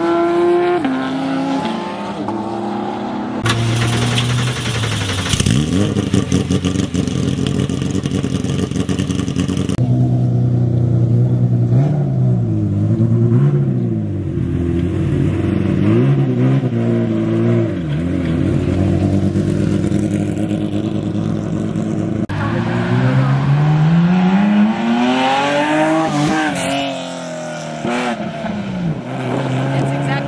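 Car engines revving and accelerating in several short clips joined by abrupt cuts, their pitch rising and falling with the throttle. Near the end one engine's note climbs steadily as the car speeds up and then drops away as it passes.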